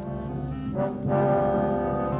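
Dramatic background score of sustained low brass chords, growing louder and shifting chord about a second in.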